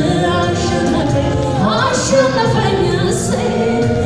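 Religious song: several voices singing together, with a voice sweeping upward in pitch about halfway through.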